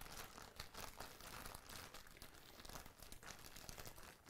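Faint crinkling and rustling of a plastic bag as bagged, sleeved power-supply cables are handled, with scattered small ticks.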